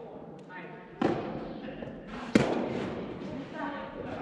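Two sharp hits of a soft tennis ball in a rally, about a second and a half apart, the second the louder. Each hit echoes in a large indoor hall.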